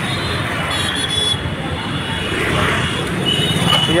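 Heavy road traffic at a busy city junction: a steady mix of engines and tyre noise from cars and motorbikes. Thin high-pitched tones come through briefly about a second in and again near the end.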